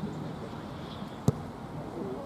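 A football kicked once, hard, for a free kick: a single sharp strike of boot on ball about a second in, over quiet outdoor background.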